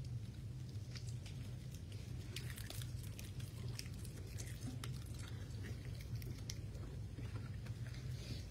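Scattered, irregular small crackles and clicks of plastic and foil as prefilled communion cups are opened and handled, over a steady low hum.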